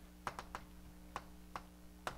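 Chalk clicking against a blackboard while writing: a faint, irregular scatter of about seven short, sharp taps.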